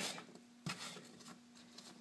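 Kitchen knife cutting a green apple on a wooden cutting board: one sharp knock of the blade on the board about two-thirds of a second in, then a few faint ticks near the end, all quiet.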